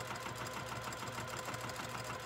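Domestic electric sewing machine running steadily as it stitches along a folded fabric hem, its needle strokes making a fast, even rhythm.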